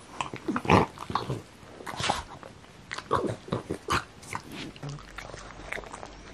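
A pug chewing on a chew bone: irregular gnawing clicks and wet chewing, the loudest bite about a second in.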